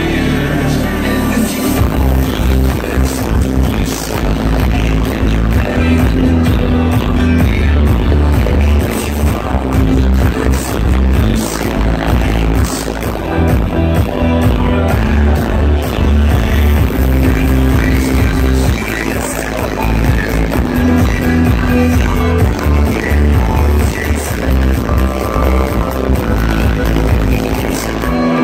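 Loud electronic dance music from a live DJ set played over the venue's sound system, with a heavy bass line and a steady beat.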